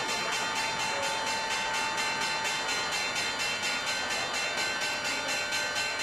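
The New York Stock Exchange's electric opening bell ringing continuously with rapid, even strokes, over applause.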